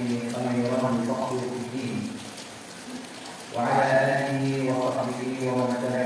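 A man's voice reciting an Arabic opening invocation in a chant-like cadence, breaking off for about a second and a half midway before going on.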